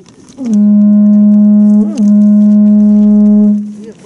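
Horagai (conch-shell trumpet) blown in one long, steady low blast that starts about half a second in, with a brief upward flip in pitch around two seconds, and fades out just before the end.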